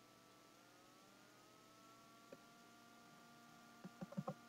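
Near silence: faint room tone with a steady low hum and a couple of faint ticks.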